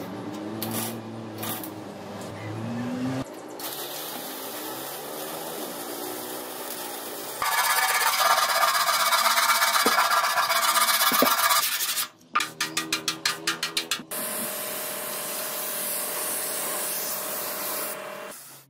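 Hand-sanding body filler on a motorcycle fuel tank with sandpaper: a steady rasping rub in several short stretches that start and stop abruptly, louder through the middle. For a couple of seconds after that it turns into quick back-and-forth strokes, about five a second.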